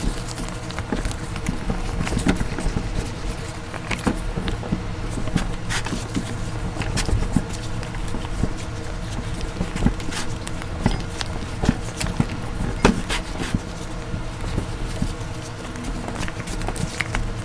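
Dough in a silicone kneading bag being pressed, folded and pushed on a wooden cutting board: irregular soft thumps and sharper knocks, with handling noise from the bag.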